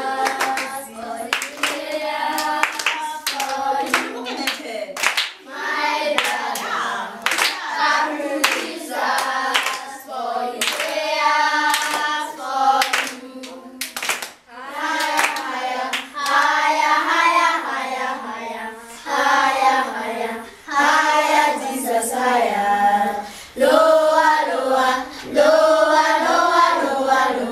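A group of children singing a hymn together, clapping along, with the claps mostly in the first half.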